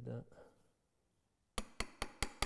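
Three sharp, quick taps of hand tools against wood near the end, after a single spoken word.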